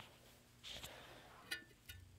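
Near silence: room tone, with a faint rustle a little before the middle and two faint sharp clicks in the second half.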